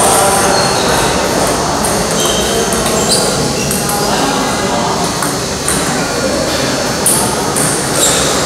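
Table tennis balls clicking irregularly as they bounce on tables and strike paddles, over a background of voices chattering.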